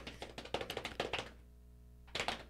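A soft, rapid drum roll of hands patting on thighs, thinning out and stopping about a second in.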